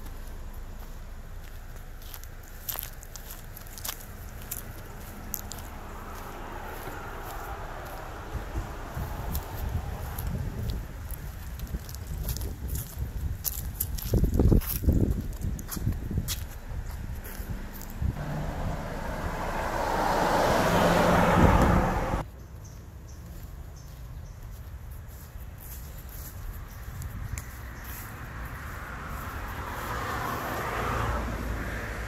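Outdoor street ambience with wind buffeting the microphone and scattered light clicks. About two-thirds of the way in, a passing vehicle grows louder for a few seconds, then cuts off abruptly.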